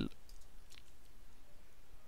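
A few faint computer keyboard clicks while a block of code is cut in a text editor.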